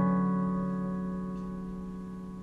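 A single held piano-style keyboard chord ringing on and fading steadily away, with no new notes struck.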